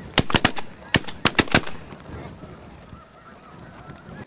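A rapid volley of shotgun blasts from several guns at geese flying overhead, about seven shots in a second and a half. Faint goose calling follows.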